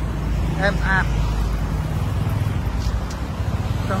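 Steady low rumble of motor traffic, with a brief spoken word about half a second in.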